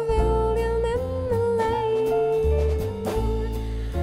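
Jazz band playing an instrumental passage: a lead instrument holds one long note for about three seconds over bass notes and drums with cymbals.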